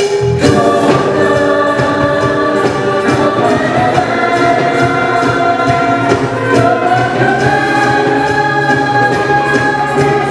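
Musical-theatre ensemble singing held chords together with a live band of guitar and brass. It opens on a sharp band hit, and the voices step up in pitch a few seconds in.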